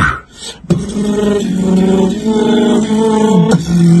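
Tag-team beatboxing: a couple of sharp percussive hits near the start, then a vocal line of held pitched notes stepping up and down for about three seconds.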